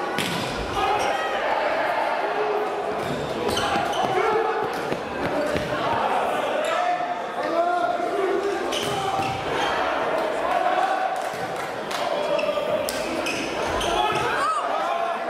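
Indoor volleyball rally in a large, echoing sports hall: the ball is struck sharply several times, spread through the rally, over steady shouting and calling from players and spectators.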